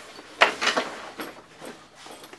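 A fabric tactical rifle bag being flipped over and set down on a wooden table: a thump about half a second in, then fabric rustling and a few light clicks.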